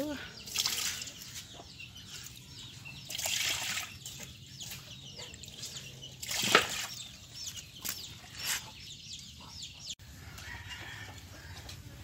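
Water being scooped with a plastic dipper from a plastic basin of eel fry and poured out, heard as a series of separate splashing pours, the sharpest about six and a half seconds in: the old water being bailed out during a water change.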